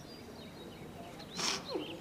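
Faint birdsong with scattered short chirps, and one short, louder animal call about one and a half seconds in that falls in pitch at its end.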